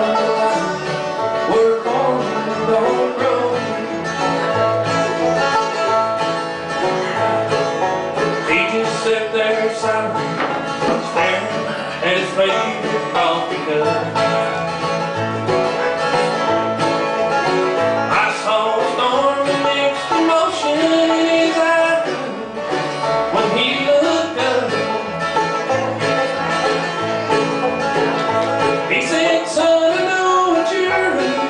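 Live bluegrass band playing: acoustic guitar, banjo and mandolin together in a steady, driving rhythm.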